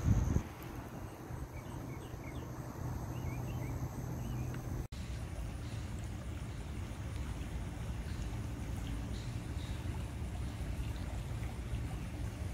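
Steady outdoor background noise, strongest in the low end, with a few faint bird chirps about two to four seconds in and a brief dropout near five seconds.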